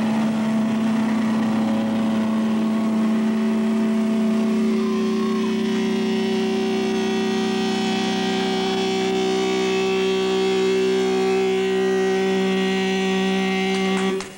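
Loud sustained drone from amplified electric guitars, several steady pitches held without change, cutting off abruptly at the very end.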